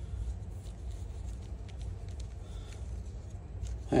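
Faint rustling of leafy cut stems and light ticks as hands move among them, over a low steady rumble.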